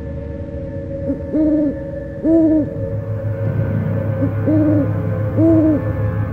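Owl hooting: four hoots in two pairs, with a short note leading into each pair. They sit over a low, steady drone of dark ambient music.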